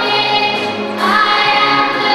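Large massed children's and youth choir singing in sustained phrases, accompanied by an orchestra. A new phrase comes in about a second in.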